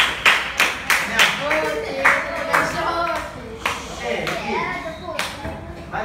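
Hand clapping in a rhythm, about three claps a second for the first second and a half and more spaced out after, mixed with children's voices.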